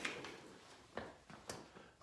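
A few faint, short clicks over quiet room tone: one at the start, one about a second in and one about a second and a half in.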